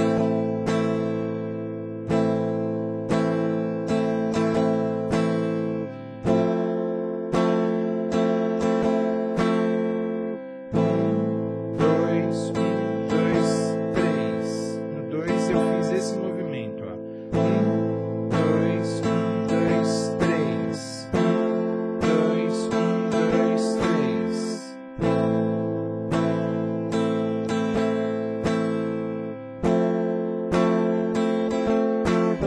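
Electric guitar with a clean tone, strummed in a repeating pattern through A minor, F and F major seventh chords. The chord changes every few seconds, with each change marked by a shift in the low notes.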